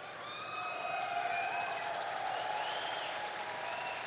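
Udio AI-generated audience applause and cheering on a synthesized stand-up comedy track, with a few long held cheering voices above the clapping.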